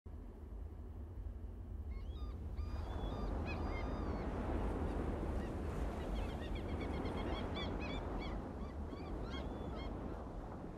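Birds calling in quick series of short chirps, starting about two seconds in, over a steady low rumble and a hiss of outdoor ambience.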